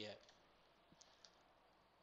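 Near silence with two faint, short clicks about a second in, from a computer mouse.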